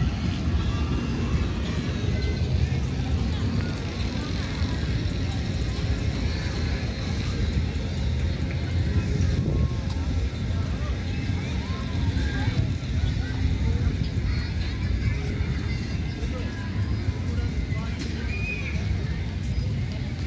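Outdoor ambience: a steady low rumble of wind on the microphone under faint distant voices of people.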